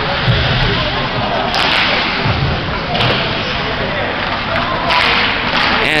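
Ice hockey play on an indoor rink: a steady rink noise with a few short knocks of sticks and puck, and two short scraping hisses of skates cutting the ice, one about a third of the way in and one near the end.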